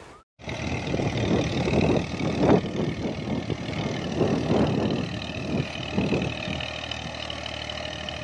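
Tractor engine running steadily under load as it pulls a mounted reversible moldboard plough through the soil, with irregular louder bumps. It starts after a brief silence.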